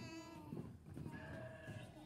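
Young children bleating like sheep, a few voices going "baa", with one longer drawn-out bleat just after the middle.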